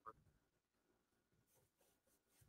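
Near silence: a pause in the conversation.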